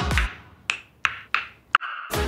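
Dance music cuts out, followed by four sharp, separate taps about a third of a second apart, each with a short ring.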